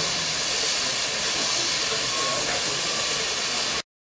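Steady hiss of steam escaping from a standing steam roller's boiler, cut off suddenly near the end.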